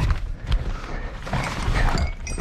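A metal mechanism clicking and creaking, with several knocks: a safe's door and lock being worked shut in a hurry.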